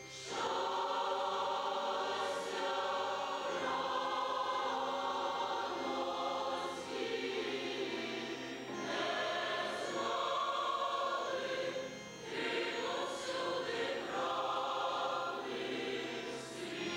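Large mixed choir singing a Christian hymn in long held chords, with brief breaks between phrases, accompanied by a keyboard instrument.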